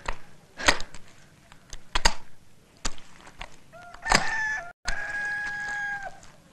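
A few sharp knocks as wet mud is worked in a wooden brick mould. A rooster crows near the end, its last note held for about a second before dropping away.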